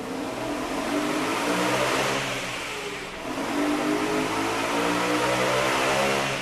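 Car engine accelerating: its pitch climbs steadily, dips about three seconds in, then climbs again.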